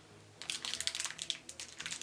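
A small sweet wrapper crinkling and crackling between the fingers as a piece of bubblegum is unwrapped: a quick, irregular run of tiny clicks starting about half a second in.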